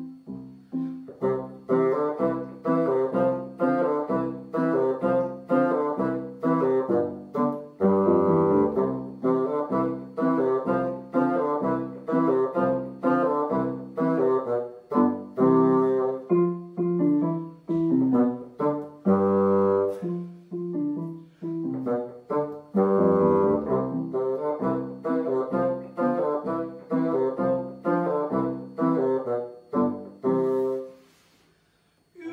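Bassoon playing an easy beginner-grade polka with digital piano accompaniment: short, detached notes in a steady, bouncy dance rhythm, with a few longer held notes along the way.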